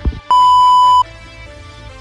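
A censor bleep: a single loud, steady, high-pitched beep lasting under a second.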